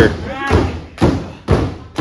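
Hands slapping the mat of a wrestling ring in a steady beat, about two slaps a second, with a voice calling out between the first slaps.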